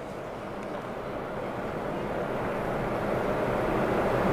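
Steady low rushing background noise with no speech, growing slowly louder through the pause.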